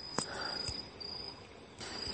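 A steady high-pitched background trill like insect song, broken briefly about a second in, with a faint click near the start.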